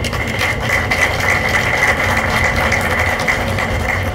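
A steady low mechanical hum like a running engine, with a faint steady high tone above it and no speech.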